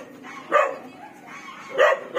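A dog barking twice, short barks a little over a second apart.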